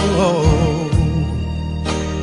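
Soul ballad sung by a male vocal group: a drawn-out sung line that bends in pitch during the first second, over sustained backing chords and bass.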